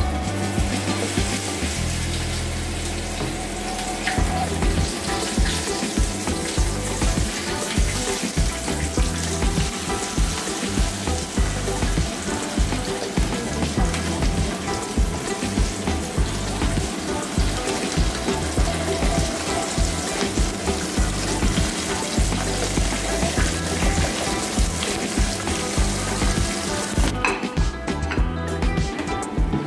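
Batter-coated pomfret pieces deep-frying in hot oil in a pan, a steady dense sizzle. The sizzle stops just before the end.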